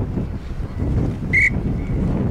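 Wind buffeting the camera's microphone in a steady low rumble. A brief, sharp high-pitched sound cuts through about one and a half seconds in.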